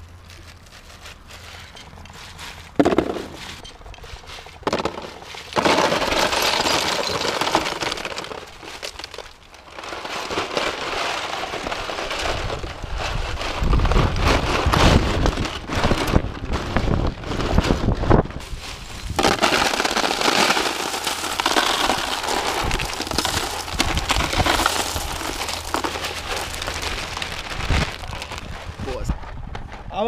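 Ice cubes tipped into plastic tubs and crackling and clattering around bare feet. A sharp knock comes about three seconds in, then a steady crackling, crunching clatter takes over and runs on.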